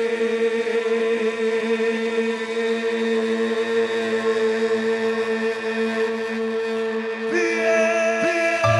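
Live cuarteto band music: a long chord held steady on one pitch with no words, with new notes coming in about seven seconds in.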